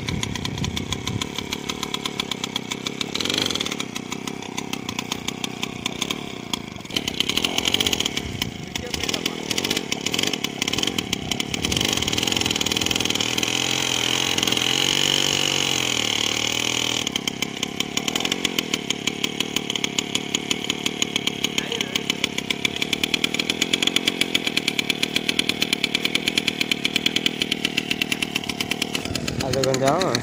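Small 50cc engine on a motorised bicycle running with an even pulsing beat. Near the middle it runs faster and louder for about five seconds, its pitch sweeping up and down, then settles back to its steady beat.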